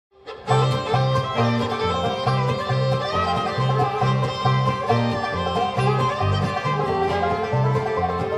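Bluegrass band playing a song's instrumental intro: banjo, fiddle, mandolin, acoustic guitar, dobro and upright bass, over a steady bass beat. The music comes in sharply about half a second in.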